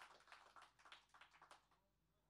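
Near silence, with faint scattered clicks dying away over the first second and a half, then dead quiet.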